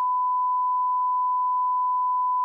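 Censor bleep: a single steady, unwavering tone held through, masking a word that is not allowed to be said.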